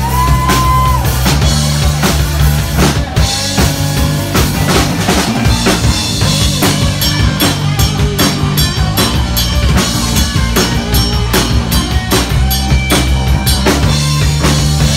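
Live rock band playing an instrumental passage on distorted electric guitars, bass guitar and drum kit. A held guitar note rings out at the start, and the drums turn to rapid, dense hits in the second half.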